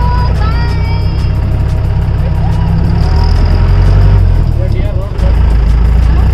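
Safari vehicle's engine running loudly with a deep rumble as the vehicle drives on, getting louder around the middle with a brief drop near the end.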